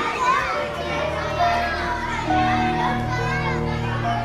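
Children's voices calling and chattering as at play, over background music of long held notes above a steady low drone.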